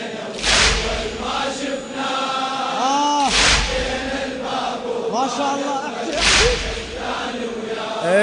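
A men's chorus chanting a latmiya refrain, punctuated by heavy chest-beating strikes (latm), three in all, about three seconds apart, each with a deep thud.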